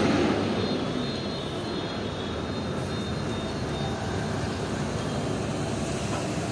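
A steady rushing roar from a high-pressure gas burner under a cooking wok. It is a little louder at first and settles about a second in.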